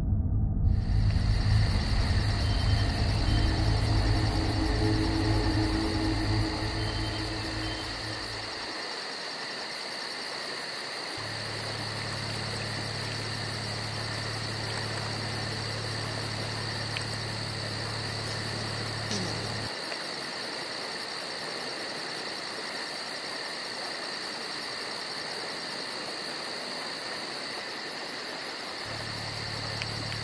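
Steady insect chorus: a constant high-pitched buzzing, with a low hum that drops out and returns a few times.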